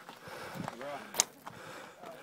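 Voices of other people talking in the background, with one sharp click a little over a second in.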